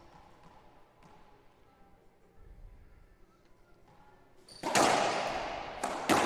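Racquetball shots in an enclosed court. After a few quiet seconds there is a sudden loud crack of the ball struck hard and slamming into the wall, which rings on in the court for about a second. Another sharp hit comes near the end.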